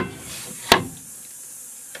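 Hands kneading a sticky flour-and-water damper dough in a metal dish: faint rubbing over a steady hiss, with one sharp click or tap a little under a second in.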